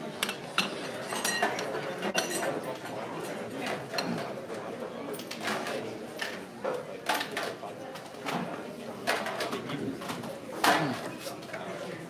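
Background voices chattering in a busy taproom, with short clinks and knocks of plates and food being moved on the bar top. A louder, falling voice-like sound comes near the end.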